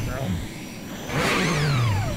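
Engine sound effect of the Super Grover Mobile revving once, starting about a second in, its pitch falling as it winds down; the vehicle revs but does not move.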